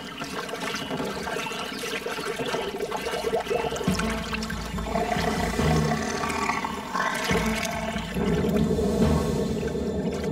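Cartoon water sound effect: water swirling and bubbling, like something stirring under the surface, with a deeper low sound added from about four seconds in.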